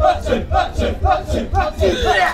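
Kecak chorus of many men chanting the interlocking "cak-cak" rhythm in unison, a fast, even pulse of about three to four beats a second.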